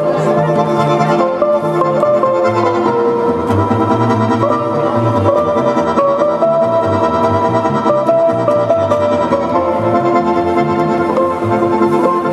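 Russian folk trio playing: accordion holding chords and melody over plucked balalaika strumming and a bass balalaika's plucked low notes.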